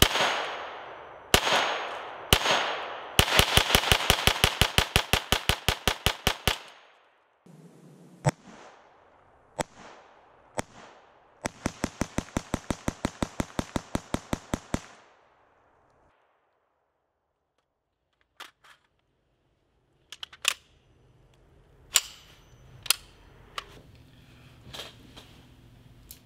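FN PS90 5.7x28mm semi-automatic bullpup carbine fired as fast as the trigger can be pulled to empty the magazine. A few single shots lead into a fast string of about seven shots a second lasting some three seconds. A few more single shots follow, then a second fast string of similar length, and near the end a few scattered, quieter sharp knocks.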